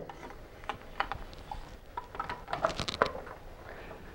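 Scattered light plastic clicks and taps with faint rustling as an i-Pilot controller head and its cable are handled and fitted onto a trolling motor's control box, a few sharper clicks among them.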